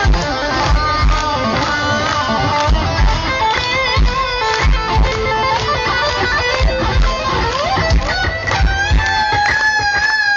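Live electric guitar playing a lead line with bent notes over a kick-drum beat, loud through a concert PA.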